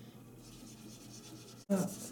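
Faint rubbing of a cloth on the chalk-painted surface of a metal watering can, wiping off inkjet-printed transfer ink; it breaks off suddenly near the end.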